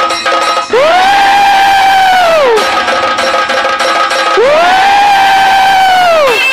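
Live Indian devotional music with keyboard, tabla and tambourine: two long, high held notes, each sliding up into pitch and falling away at its end, about two seconds apart, over steady chords and light percussion.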